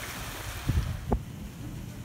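Wind rumbling on the microphone over gentle sea waves washing onto a sandy beach, with a few short low thumps between about half a second and a second in.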